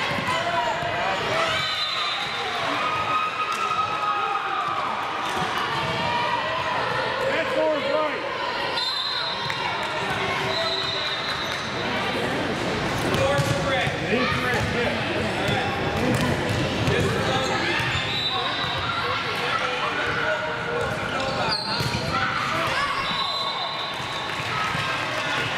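Indistinct chatter and calls from many overlapping voices in a large, echoing gymnasium, with balls bouncing on the hardwood floor.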